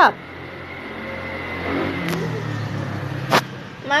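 A motor vehicle passing by, its noise swelling towards the middle and then fading, with a low hum. A single sharp knock comes near the end.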